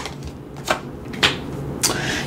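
Tarot cards being handled as a card is drawn from the deck and laid into the spread: three crisp card snaps about half a second apart.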